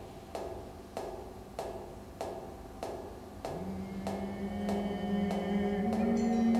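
Water drops falling at a steady pace, about one every 0.6 seconds, each with a short pitched ring, as part of an experimental water-music piece. A low sustained tone fades in about halfway through and holds, with higher tones joining near the end.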